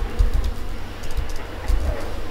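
Computer keyboard typing: a quick run of key presses with dull low thumps under the clicks.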